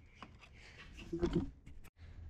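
A few faint, sharp clicks and light scraping as a steel pin-removal tool pries plastic push-pin retainers out of the grille panel.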